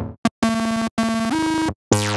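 Native Instruments Monark, a Minimoog-style monophonic software synthesizer, playing preset demo notes: a short pluck and a quick blip, then two held buzzy notes, the second stepping up in pitch partway through. Near the end a new note starts with overtones sweeping downward.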